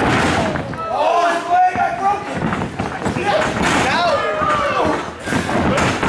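Wrestlers' bodies hitting a wrestling ring's canvas with a couple of heavy thuds, one near the start and one about a second and a half in, amid people shouting.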